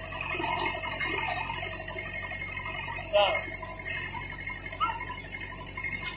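Voices talking indistinctly in the background over a steady low hum.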